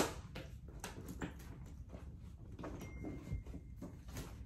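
Light handling noises: a tablet in its case being put into a soft grained-calfskin bucket bag, a run of small knocks and rustles with the firmest knock right at the start.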